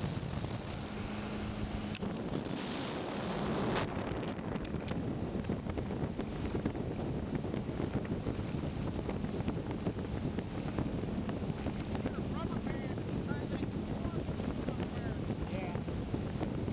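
Steady rush of wind on the microphone over a motorboat running under way across choppy lake water; the sound changes abruptly about four seconds in.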